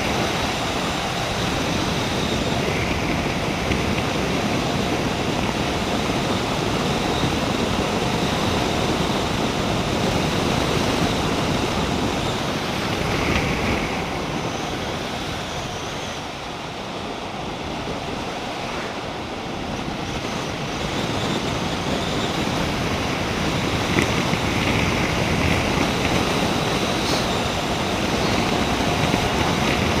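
Steady rush of wind buffeting a motorcyclist's helmet-mounted camera microphone at road speed, with the motorcycle's engine and tyres under it; the rush grows quieter for a few seconds about halfway through.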